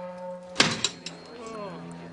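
A sharp, loud bang about half a second in, with a smaller knock right after it, then a short falling pitched sound, over held background music notes.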